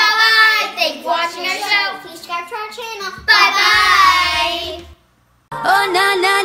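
Young girls singing together in a high, bright sign-off chant, ending on one long held note; the sound cuts off suddenly about five seconds in, and half a second later music starts.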